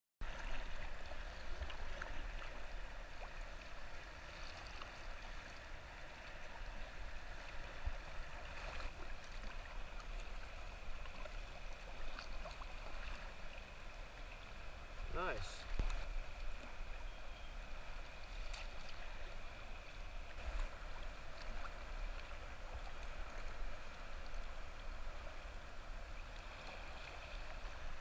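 Kayak paddle strokes and river water washing and lapping against a plastic kayak hull, a steady wash of water broken by a few short splashes.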